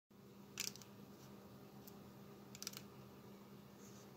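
Near silence with a faint steady hum, broken by a few short clicks of keys being pressed: a cluster about half a second in and another about two and a half seconds in.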